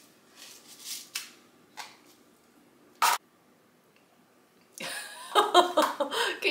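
Faint rustles and scrapes of chocolate sprinkles in a plastic bowl as a frosted cake roll is dipped and rolled in them, with one short sharp click about halfway through. A woman laughs near the end.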